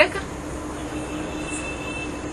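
Steady background noise with a faint constant hum, the noise floor of an old lecture recording.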